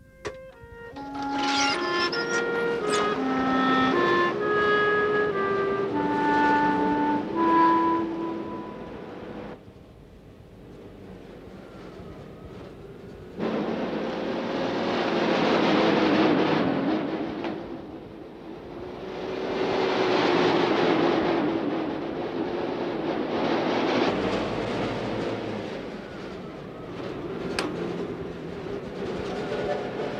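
A short melody from the film score, clear notes stepping up and down, which stops after about nine seconds. After a quieter stretch, a vehicle's running noise swells and fades several times.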